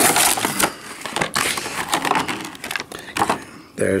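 Stiff plastic blister packaging of a boxed action figure crackling and crinkling as it is pried away from its cardboard backing, loudest in the first half-second, followed by scattered sharp clicks and snaps of the plastic.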